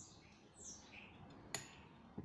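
Very quiet work sounds from a quarter-inch socket and extension on the pump motor's through bolts: faint high squeaks, then one sharp metal click about one and a half seconds in.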